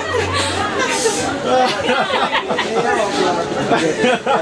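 Several people talking at once in excited chatter, voices overlapping.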